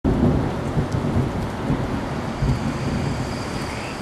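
A steady rushing hiss, as of rain, with irregular low rumbling underneath.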